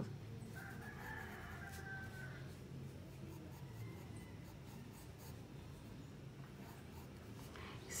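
Faint scratching of a graphite pencil on paper as a small figure is sketched. A faint, drawn-out call sounds from about half a second in for about two seconds.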